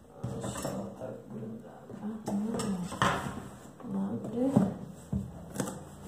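Cardboard boot box being handled and opened: the lid lifted and the boxes knocking and sliding on a table, in a few sharp knocks. A woman's voice makes some wordless sounds between them.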